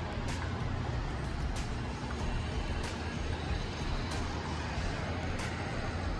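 Steady low rumble of city street traffic below, under background music whose light beat ticks about every second and a quarter.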